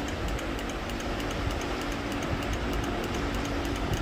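Steady background hum with a faint, fast, even ticking over it.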